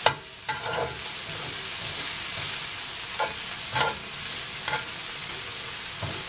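Stir-fry of chicken, potato and vegetables sizzling steadily in a cast iron skillet. A metal spatula scrapes and knocks against the pan about five times as the food is turned.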